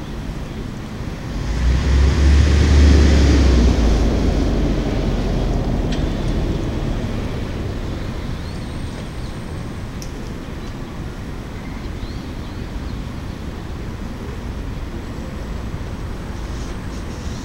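Wind buffeting the microphone over a steady low city rumble, swelling in a strong gust about two seconds in and slowly easing off.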